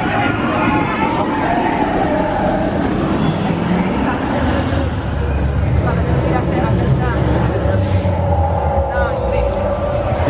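Intamin launched steel roller coaster train rumbling along its track, a low steady rumble that builds a few seconds in and holds until near the end. People are talking over it.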